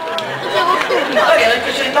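Speech only: voices talking, with no other sound standing out.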